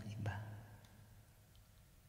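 A man's voice finishing a short spoken phrase in the first moment, then faint room tone.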